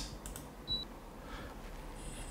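A single short, high electronic beep about two-thirds of a second in, as the learned infrared 'on' command is transmitted to the air conditioner, over faint clicks and low room noise.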